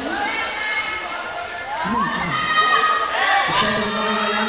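Audience cheering and shouting, many voices overlapping, some held calls among them.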